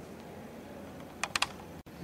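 Three quick, light clicks in a row about a second and a quarter in, over faint room hiss.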